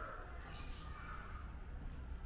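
The fading end of a rooster's crow over outdoor ambience with a steady low rumble, and a short high sound about half a second in.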